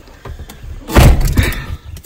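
Pickup truck door shut with a single loud thud about a second in.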